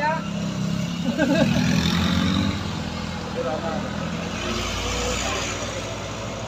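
Vehicle engines on a steep uphill hairpin: a motorcycle engine passing close in the first seconds, then a cargo truck's diesel engine pulling up the slope, a deep rumble growing from about four seconds in.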